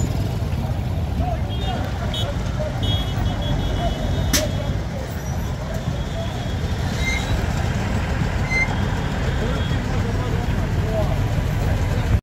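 Engines of a slow-moving military convoy, an armoured vehicle and pickup trucks, running with a steady low rumble, mixed with crowd voices and a few short high-pitched tones.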